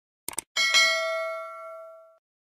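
Subscribe-animation sound effects: a quick pair of mouse clicks, then a bright notification-bell ding that rings on and fades away over about a second and a half.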